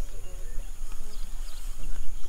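Men talking quietly, with short repeated chirps and a steady high-pitched drone behind them and a low rumble underneath.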